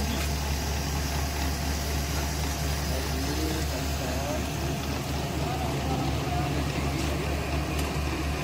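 A steady low machine hum, with faint voices in the background.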